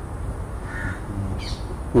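A crow cawing briefly and faintly, with a short higher chirp after it, over a low steady background hum.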